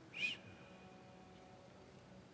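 A single short, high animal call, a quick note that rises and falls about a quarter second in, against quiet room tone after the chanting has stopped.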